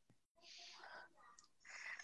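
Near silence, with a faint breathy voice sound about half a second in and again just before the end.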